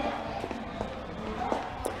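Faint, scattered footsteps and light knocks as someone walks through a shop, over a low murmur of background voices.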